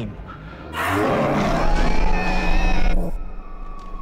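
Guttural creature-scream sound effect, a harsh, noisy shriek about two seconds long that starts about a second in and cuts off suddenly. A single held tone follows, slowly falling a little.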